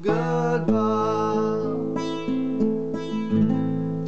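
Classical nylon-string guitar fingerpicked in a bossa nova accompaniment: a few plucked chords and single notes that ring on. A man's singing voice holds a word in the first moment before the guitar plays alone.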